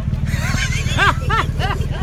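A man laughing: a string of short rising-and-falling "ha" pulses, a few per second, over a steady low rumble.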